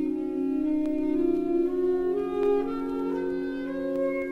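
Instrumental accompaniment to a spoken poem: sustained held notes stepping slowly upward over a steady low drone.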